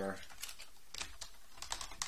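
Computer keyboard being typed on: about half a dozen separate key clicks, unevenly spaced.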